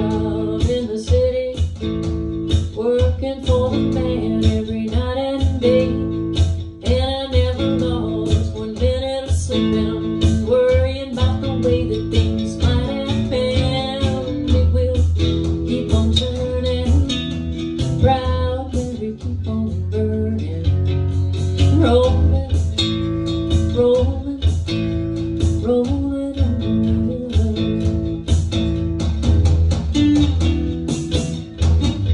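Live home rehearsal of a song: guitar plucked and strummed in a steady rhythm over a bass line, with a melody line on top.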